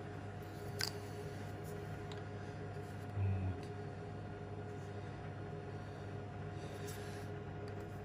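Faint clicks of a small plastic end-mill tube being opened and handled, over a steady low hum of workshop background.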